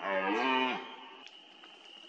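Red deer stag roaring in the rut: one deep, loud roar whose pitch rises and then falls, ending just under a second in. A faint steady insect trill follows.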